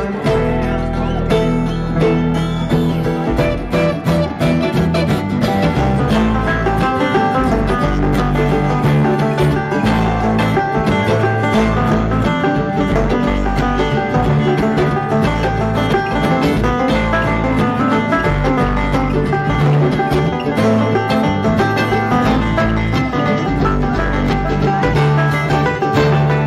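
A bluegrass string band plays an instrumental break live through a PA: banjo at the front over guitar and upright bass, with a steady bass line under fast picked notes.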